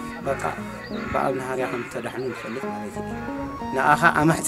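A man speaking over steady background music.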